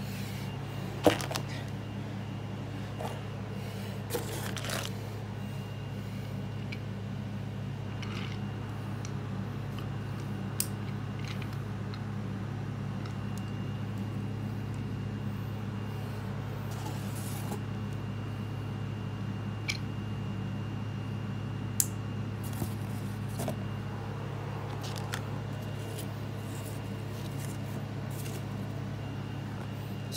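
A steady low hum with scattered light clicks and scrapes of a cardboard box and toy trains being handled; the sharpest click comes about a second in.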